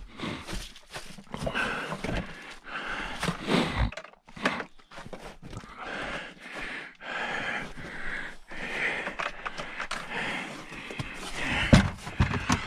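Footsteps crunching in wet, packed snow, a step about every half second to second.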